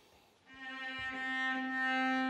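Violin playing a long, steady bowed note that starts about half a second in, after a brief hush.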